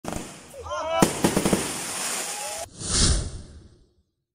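Rocket fireworks going off: a sharp bang about a second in, then a run of crackling pops that cuts off suddenly. After that comes a swelling whoosh that fades away.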